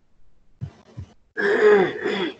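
A man's brief wordless vocal sound, about a second long, starting a little past the middle. It is preceded by two soft, very short sounds.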